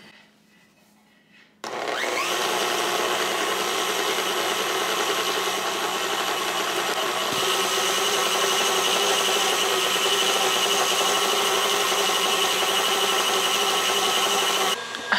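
KitchenAid Classic stand mixer's motor starting about two seconds in, spinning up with a short rising whine, then running steadily as its wire whisk beats heavy cream that is breaking up into clumps on its way to butter. Its tone shifts slightly about halfway through.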